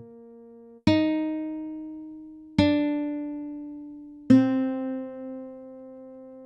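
Closing music: a guitar plucks three notes or chords, each ringing out and fading, the last one left to ring.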